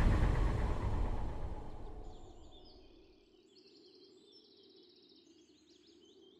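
Dramatic background music dying away over about three seconds, then near silence with faint high chirping.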